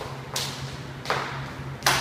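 Two sharp hand claps about a second and a half apart, with a fainter tap between them, over a steady low hum.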